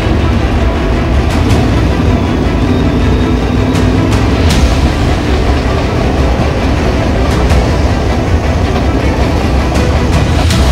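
Dirt Super Late Model's racing V8 engine running at low, steady revs, heard from inside the cockpit, with a few short clicks over it.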